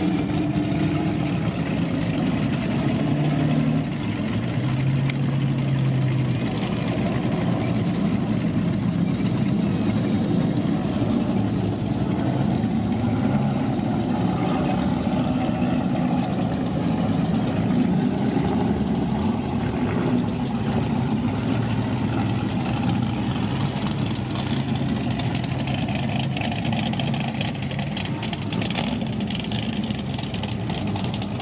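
Several sedan race cars' engines running at low revs with occasional blips of throttle as the cars roll past slowly on dirt, a steady overlapping engine sound.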